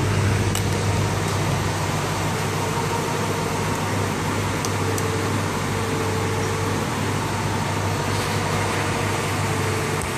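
Car air-conditioning blower running steadily inside the cabin, with a constant low hum beneath it. The system is blowing cold air, reading around 32 degrees at the vents, a sign that the AC is working properly.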